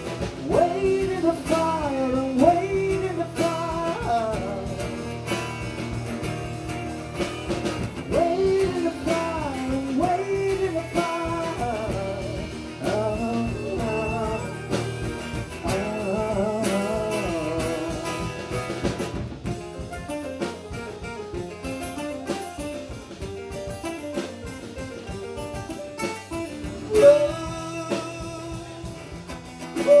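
Live acoustic band music: two strummed acoustic guitars and drums, with a sliding melody line over them that comes in phrases every few seconds. A short 'woo' shout comes right at the end.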